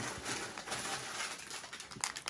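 Faint rustling and light knocks of snack packets and plastic wrappers being handled and lifted out of a cardboard box.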